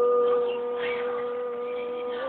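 A man singing, holding one long sustained note that eases off slightly in volume about halfway through.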